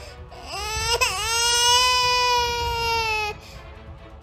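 Cartoon crying sound effect for a weeping bulldozer character: one long wailing cry that rises at first, dips about a second in, then holds steady and stops shortly before the end. Background music plays underneath.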